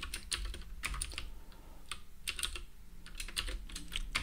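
Computer keyboard typing: short irregular runs of keystroke clicks with brief pauses between them.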